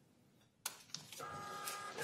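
A small printer hooked to the electronic poll book starts up and prints the voter's driving directions. It begins with a sudden mechanical start and settles into a steady whine.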